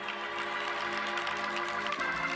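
Electric organ holding a soft, sustained chord under the preaching, moving to a new chord right at the end.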